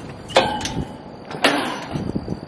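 Metal fence gate being opened: two sharp metallic clanks about a second apart, each with a brief ringing squeal.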